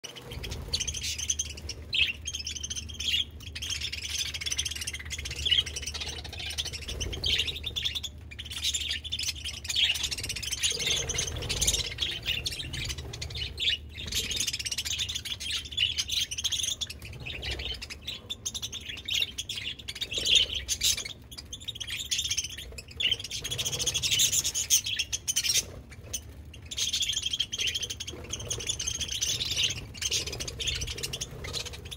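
A large flock of budgerigars chirping and chattering continuously, many birds calling over one another.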